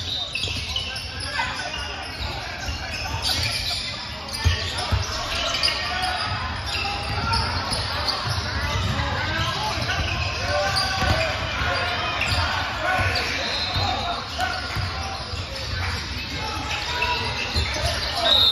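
Basketball being bounced on a hardwood gym floor during play, with indistinct voices of players and spectators, all echoing in the large gym.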